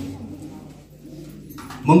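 A man speaking through a microphone and PA loudspeakers in a hall pauses between phrases, his voice trailing off in the room's echo. He starts speaking again near the end.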